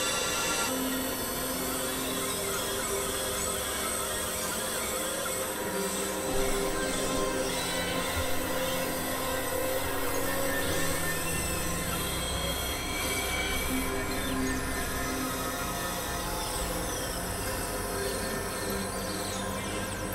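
Experimental electronic drone and noise music: dense layers of sustained, screechy synthesizer tones that shift every few seconds, with a few slow pitch glides in the second half.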